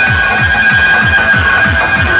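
A large DJ sound system of horn speakers and bass cabinets blasting competition music at very high volume. A falling bass sweep repeats about three times a second under a steady, high-pitched alarm-like tone.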